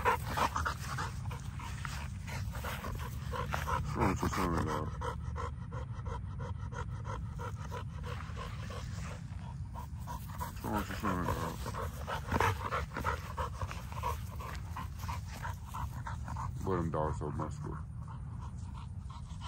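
An XL American bully dog panting close by, a quick, steady run of breaths.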